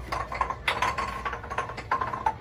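A Plinko disc dropping down a peg board, clicking irregularly as it knocks off peg after peg.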